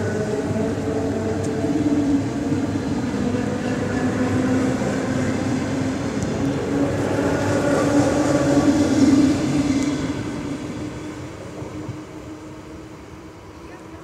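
An ER9M electric multiple unit passing close by, with a steady rolling rumble of wheels on rail and a humming drone from its motors. It is loudest about nine seconds in, then fades away over the last few seconds as the end of the train goes by.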